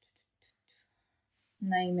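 A few faint, short, hissy ticks, then a woman's voice starts speaking about a second and a half in.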